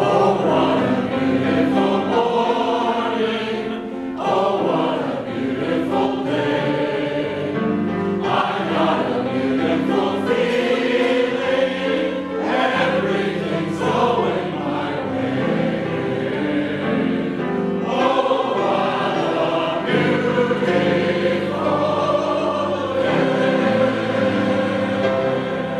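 An audience singing a show tune together with a male soloist, accompanied by piano.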